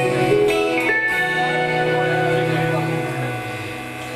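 Instrumental passage of live acoustic-guitar music with an electric bass underneath, playing held, ringing notes that ease off in loudness near the end.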